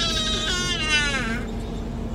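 A person's drawn-out, high-pitched vocal sound lasting about a second and a half, drifting slightly down in pitch before it fades, over a low steady hum.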